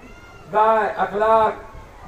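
A man's voice speaking into a microphone: two long, drawn-out syllables, each rising and then falling in pitch, from about half a second in.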